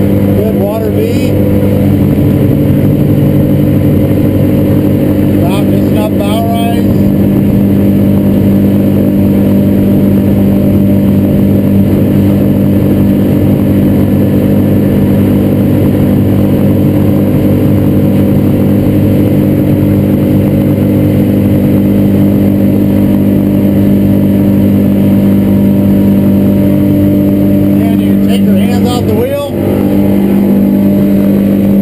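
Suzuki DF300 outboard motor running steadily at cruising speed, a level engine hum over hull and water noise, heard from inside the boat's enclosed cabin. The engine note shifts slightly near the end.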